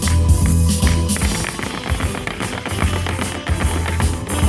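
Music with a strong bass line and guitar, over the quick clatter of Irish dance hard shoes striking a wooden dance board in rhythm.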